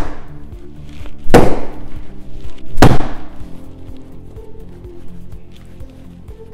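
A shaped loaf of bread dough pounded down on a stone countertop to knock out its air bubbles, heard as heavy thuds. One falls right at the start and two more follow about a second and a half apart. Background music plays throughout.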